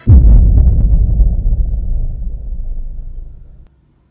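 A sudden deep boom that fades away slowly over about three and a half seconds.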